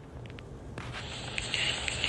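Low steady hum and hiss, with a few faint ticks early on and the hiss growing about a second in.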